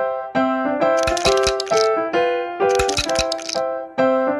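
Children's background music: a bright keyboard melody of short notes over a light drum beat, with a shaker rattling in two bursts, about a second in and again near three seconds.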